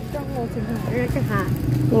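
Voices talking, with a steady low hum of an idling engine underneath.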